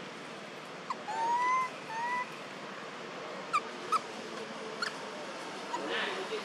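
Macaque giving two short rising coo calls about one and two seconds in, followed by a few brief, sharp high squeaks.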